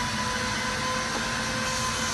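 Steady hum and hiss of running workshop machinery, with a few constant whining tones over it and no distinct strokes.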